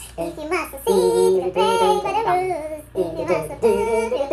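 A man and a woman singing a tune together in held, gliding notes, with a brief break about three seconds in.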